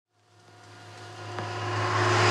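A motor vehicle approaching, its engine hum fading in from silence and growing steadily louder.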